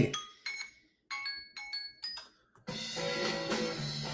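Electronic alarm chime: short bell-like notes at a few different pitches, then a sustained chord from nearly three seconds in. It is a timer marking the end of a three-minute drawing exercise.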